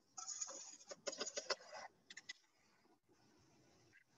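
Shredded plastic bottle caps rattling and scraping as they are fed into an injection moulding machine's hopper, for about the first two seconds, followed by a few sharp clicks.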